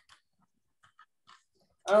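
A near-silent pause with a few faint small clicks, then a man's voice starting to speak near the end.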